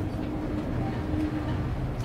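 Low, steady rumble of a large motor yacht's inboard engines under power, with a faint constant hum, as the boat backs away from the slip to go around.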